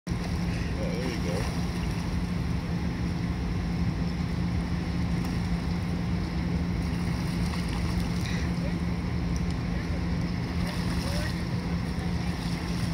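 Steady rushing outdoor noise with a low hum, and a few faint distant voices; the ducks' splashing does not stand out from it.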